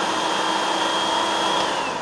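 Food processor motor running steadily as it purees steamed cauliflower with olive oil, a whine over an even whirr. Near the end the whine falls in pitch as the motor starts to wind down.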